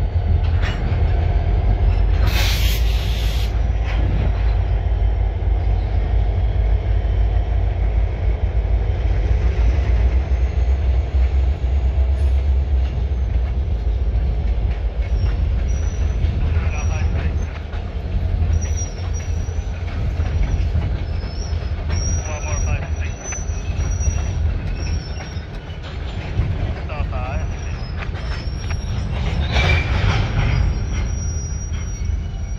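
Freight train of tank cars and covered hoppers rolling slowly past, with a steady low rumble of wheels on rail. A short loud hiss about two seconds in. From about halfway the wheels squeal in thin, high, wavering tones.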